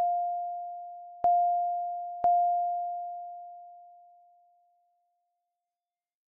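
Synthesized mass-spring-damper oscillator, a mi-gen~ physical model, struck by force impulses. It rings a pure, steady mid-pitched tone that is re-struck with a small click about a second in and again about two seconds in. Each strike dies away smoothly, and the last one fades out a few seconds later.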